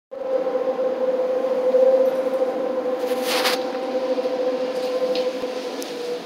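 Subway train in the underground station, giving a steady whine over a low rumble, with a short hiss about three seconds in.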